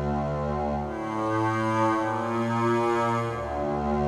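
Software synthesizer's sample engine playing the 'Bowed Acoustic' sample through granular playback: sustained low bowed-string notes like a cello. The pitch changes about a second in and again near the end.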